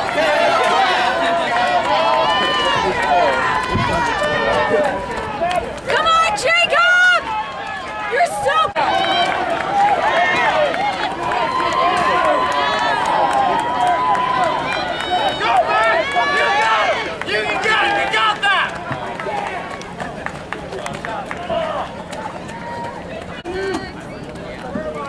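Several spectators' voices talking and calling out at once, overlapping so that no words stand out, growing quieter in the last few seconds.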